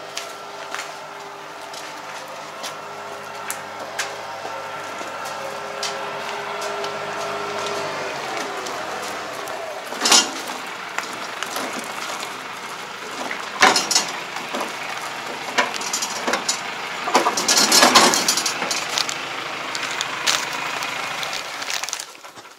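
A steady mechanical hum that stops about eight seconds in, then irregular metal clanks and knocks from a steel wing harrow's frame and docking fittings being handled, the loudest around ten, fourteen and eighteen seconds in.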